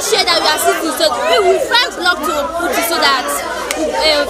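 Schoolchildren chattering and laughing, many voices talking over one another.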